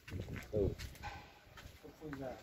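A man's short murmured "ừ" of assent about half a second in, then another brief voiced sound near the end, over a quiet background.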